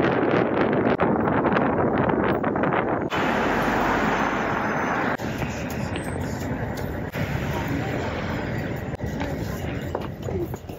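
Outdoor city street noise: a steady rush of traffic and wind on the microphone, changing abruptly about three and five seconds in.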